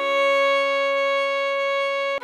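A viola holding one long high D-flat for the whole two seconds, bowed steadily, over a quieter low sustained note underneath. The next note starts just after.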